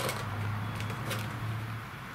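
Coarse magnesium granules and potassium chlorate powder rattling in a small lidded plastic tub shaken gently by hand, a few soft rattles about two a second, over a steady low hum.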